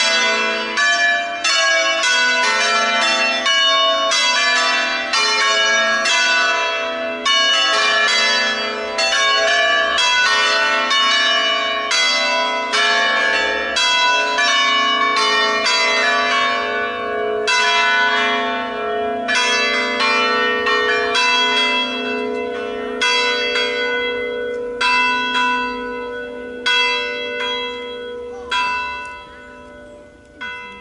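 Five swinging church bells tuned to an A-major peal, rung for a funeral: a dense run of overlapping strikes, each ringing on, which thin out and fade over the last several seconds as the peal winds down.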